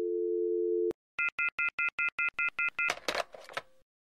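Telephone line sound effect: a steady two-note landline dial tone, cut off by a click about a second in. Then a quick run of about nine short electronic beeps, about five a second, ending in a brief burst of noise.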